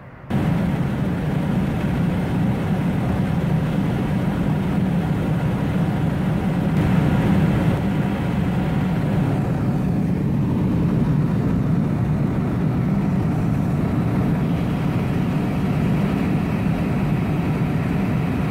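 Steady in-flight cabin noise of a Boeing 747-400: engine and airflow noise heard inside the cabin, heaviest in a low hum.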